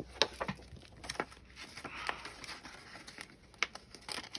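Paper sheets and plastic page protectors rustling and crinkling as they are handled in a three-ring binder, with a few short sharp clicks and taps scattered through.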